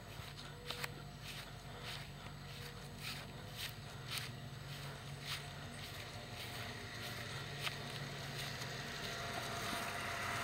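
Above-ground pool sand filter pump running with a steady low hum that grows louder toward the end. It is still running although it should have shut off. Footsteps on grass tick along with it.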